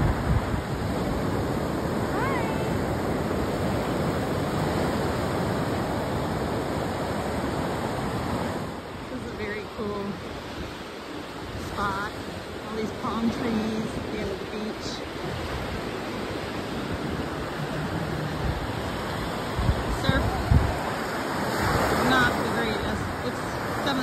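Surf washing onto a sandy beach: a steady rush of breaking waves, loudest for the first eight seconds or so and then quieter, with faint voices and a few short bird chirps later on.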